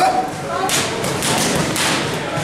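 Boxing gloves punching leather focus mitts: a quick flurry of sharp smacks, several a second, starting about a third of the way in.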